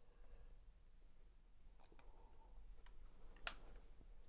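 Near silence: room tone with a few faint, sharp clicks, the clearest about three and a half seconds in.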